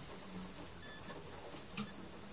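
Quiet room tone with a few faint clicks and taps, the clearest near the end.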